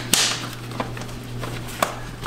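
The Geo Metro's round air cleaner cover being pulled off the housing: a sharp swish-scrape just after the start, then three light clicks of the lid and its clips.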